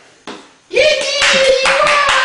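Hands clapping in a quick even run, about four or five claps a second, under a long, laughing cheer of "Yay!".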